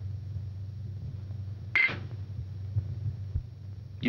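Steady low hum of an old film soundtrack. A single short clink comes a little before the middle, and a soft thump comes near the end.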